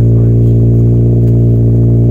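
Subaru BRZ's flat-four boxer engine idling steadily, heard close at the tailpipe as a loud, even exhaust hum with no revving.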